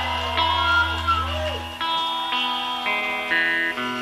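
Live rock band playing quietly, with sustained guitar chords that change every second or so over a low bass note that stops about two seconds in.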